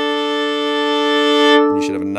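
Fiddle bowing a double stop on the open D and A strings, a harmonious perfect fifth, held as one long steady tone that stops near the end.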